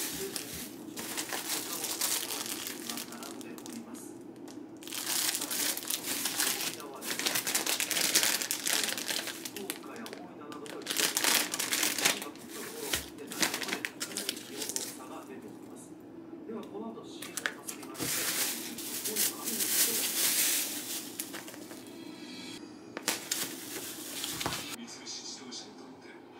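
Thin plastic shopping bag crinkling in repeated bursts as groceries are handled and lifted out of it.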